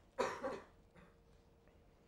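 A single short cough near the start, followed by a faint steady hum.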